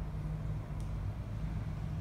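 A steady low hum of a running machine, even throughout with no starts or stops.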